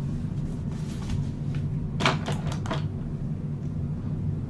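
A few sharp clicks and knocks of a small plastic cosmetic container being handled and closed, about two seconds in, over a steady low hum.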